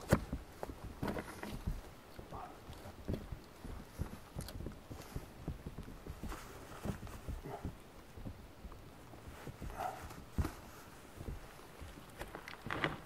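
Boots stepping and shuffling on rocky ground: an irregular series of soft knocks and scuffs, the sharpest knock right at the start.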